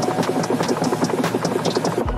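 Car windshield wipers running at very high speed in heavy rain, sweeping back and forth in a rapid, continuous chopping rhythm.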